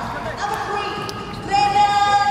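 Murmur of people in a large hall, then, about one and a half seconds in, a loud, long drawn-out call from a voice held on one pitch.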